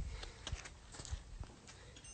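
Handling noise from a phone being moved and set down: a low thump at the start, then a few scattered faint knocks and rubs.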